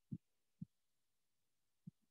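Three short, dull thumps in near silence: two about half a second apart, then a third near the end.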